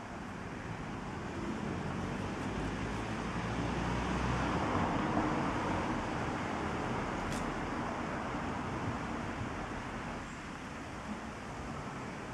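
Steady background road-traffic noise, swelling to a peak about four to five seconds in and easing back off, like a vehicle passing.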